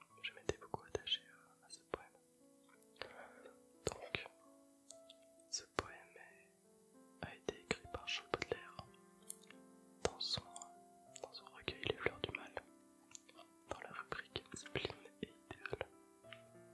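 Close-miked French whispering, reading aloud, broken by many sharp clicks, over soft background music of held notes that change in steps.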